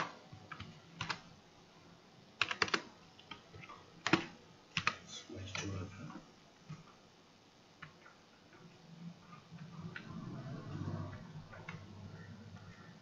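Computer keyboard keys clicking: scattered single presses and a quick run of three or four, mostly in the first half, then only faint low sounds.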